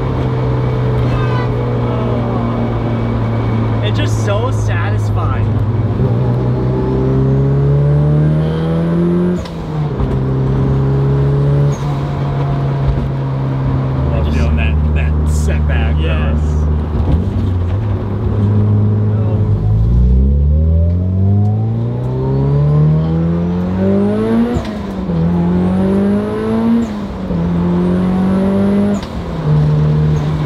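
Mitsubishi Lancer Evolution VIII's turbocharged four-cylinder engine under hard acceleration, heard from inside the stripped cabin. The pitch climbs through each gear and drops at each upshift. Just past the middle it falls to low revs and climbs again, followed by quicker shifts near the end.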